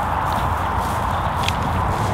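Wind rumbling on the microphone over an open playing field: a steady low rumble with hiss, and a couple of faint clicks.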